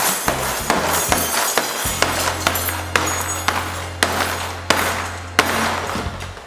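Repeated slams, about two a second, of a plastic tub holding metal utensils down onto pastry dough on a kitchen counter, flattening it. Background music with a deep bass note runs underneath.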